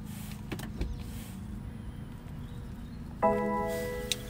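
BMW 330e cabin chime: a single pitched electronic tone sounding as reverse gear is selected and the rear-view camera comes on. It starts suddenly about three seconds in and rings on, fading slowly, over a low steady hum from the car with a couple of light clicks before it.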